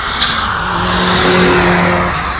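Turbocharged Mazda MX-5 driving past close by, its engine holding a steady pitch and swelling as it passes. A short, sharp hiss comes just after the start.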